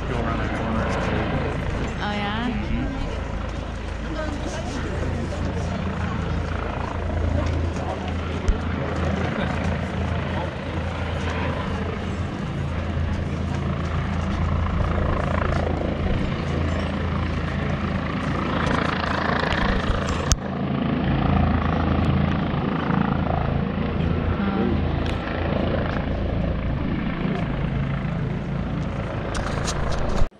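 Indistinct voices of people talking over a steady low drone.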